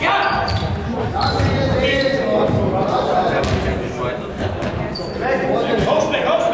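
A Faustball being struck and bouncing on a sports-hall floor, with sharp impacts every second or so, under continuous indistinct players' voices echoing in the large hall.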